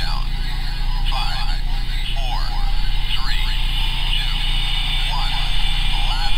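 Thin, band-limited radio voice chatter over a steady low hum.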